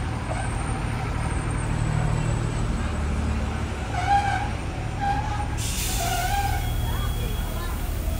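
Low steady rumble of a diesel-hauled passenger train rolling slowly along the platform as it draws to a stop. About five and a half seconds in, a hiss of air from the train's brakes starts and carries on.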